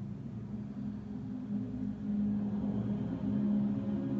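A group of people humming together, a sustained low drone of overlapping voices held on nearly one pitch, swelling louder about two seconds in.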